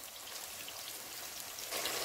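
Seasoned beef cubes sizzling as they fry in hot vegetable oil in a pan, a steady hiss that grows a little louder near the end.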